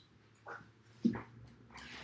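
A pause in a man's talk, with two short, faint breath noises from the speaker about half a second and a second in.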